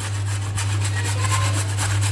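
A carrot being grated on a metal box grater, in quick repeated scraping strokes over a steady low hum.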